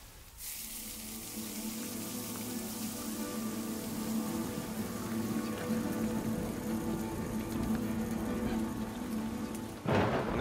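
Electronic concert music generated from a chef's cooking: a drone of held low tones under a dense, even hiss, coming in about half a second in and slowly growing louder.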